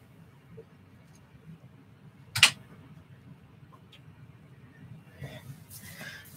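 Faint room tone broken by a single sharp knock about two and a half seconds in, with soft rustling near the end.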